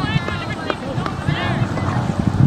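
Distant high-pitched voices of players or spectators shouting across a soccer field, with a couple of faint knocks in between.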